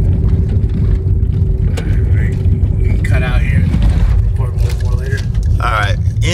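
Steady low road rumble and engine noise heard inside a car driving on a dirt road, with a faint steady hum underneath. A short high voice sound comes about halfway through and again near the end.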